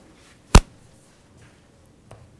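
A single sharp knock on the kitchen worktop about half a second in, over faint sounds of bread dough being kneaded by hand.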